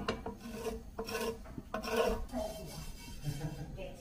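Wooden spatula scraping and rubbing across a non-stick frying pan, stirring fennel seeds as they dry-toast, in a run of irregular strokes.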